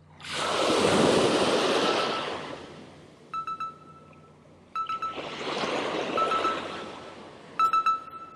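Surf breaking and washing up the sand in two long swells. Short, stuttering bursts of a thin whine come from a spinning reel as the metal jig is cranked in with jerks, most of them in the second half.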